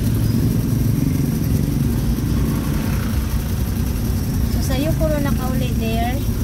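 Motor vehicle engine running with a steady low hum in slow traffic, heard from inside the vehicle. A voice talks over it near the end.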